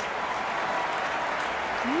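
A large audience applauding steadily, with a woman's voice coming in near the end.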